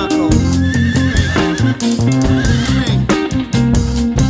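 Instrumental hip-hop cover played on electric guitar, electric bass and drum kit, a steady groove with a high wavering note held for about a second near the start.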